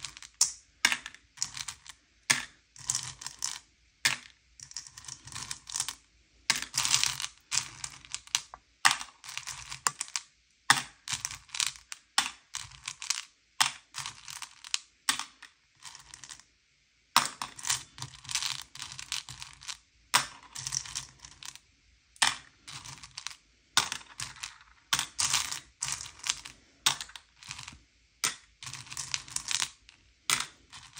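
M&M's candies clicking and rattling as a hand rummages through a bowl of them and drops them into small clear cups, in irregular clattering flurries with a brief pause a little past the middle.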